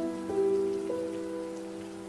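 Soft solo piano music: a few gentle notes struck in the first second ring on and slowly fade, over a faint steady hiss.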